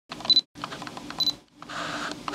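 Camera handling and operating sounds: clicks and mechanical rattling in short bursts, with two brief high beeps about a second apart.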